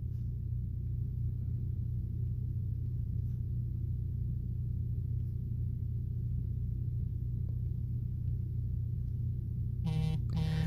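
A steady low hum with nothing else over it, unchanging throughout.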